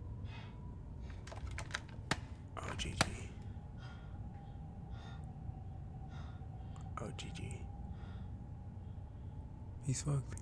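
Quiet, tense horror-film soundtrack: faint, frightened breathing, with a cluster of sharp clicks and knocks one to three seconds in and another about seven seconds in, over a faint steady tone.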